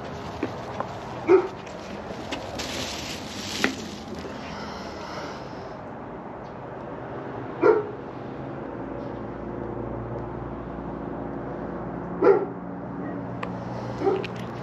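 A dog barking: single barks a few seconds apart, four in all, over a steady low background hum.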